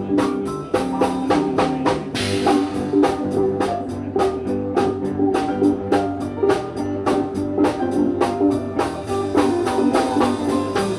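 Rock band playing live: a drum kit keeps a fast, steady beat of about four hits a second under guitar notes, with a splash of cymbal about two seconds in.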